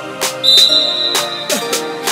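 Background music with a steady beat, and over it a single short referee's whistle blast, about half a second long, that starts about half a second in: the signal for the penalty kick to be taken.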